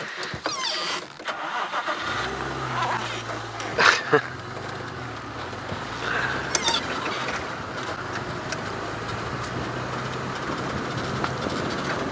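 Open safari vehicle's engine coming in about two seconds in and running steadily as the vehicle pulls away and drives slowly along a dirt track, with tyre and wind noise; a single knock about four seconds in.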